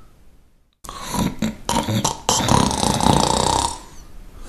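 Loud snoring: after a brief silence, a run of rough, noisy snores with short breaks between them, starting about a second in and stopping just before the end.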